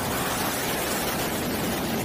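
F/A-18E/F Super Hornet's twin GE F414 jet engines roaring at high thrust during its takeoff roll, a loud, steady rush of noise.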